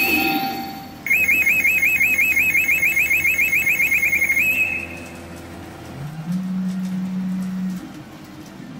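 Sanyo P Umi Monogatari 4 Special Black pachinko machine playing its reach sound effects: a rapid alarm-like electronic warble, about six chirps a second, runs for three and a half seconds. Near the end a steady low tone sounds as the reels line up on a jackpot of three 1s.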